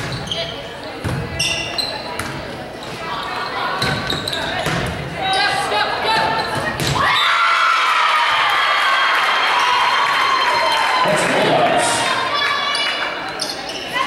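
Indoor volleyball rally: the ball is struck several times amid players' shouts. About halfway through, a loud cheer of many voices rises, holds for about four seconds, then fades.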